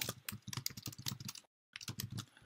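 Typing on a computer keyboard: a quick run of light key clicks, with a short break in the clicks about three-quarters of the way through.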